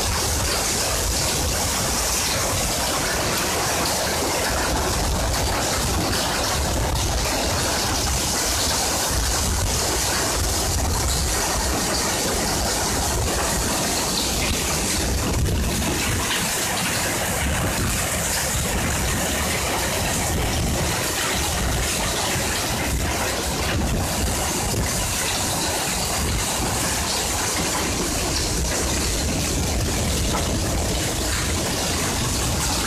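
Heavy rain pouring onto a flooded road: a steady, dense hiss of drops splashing into standing water.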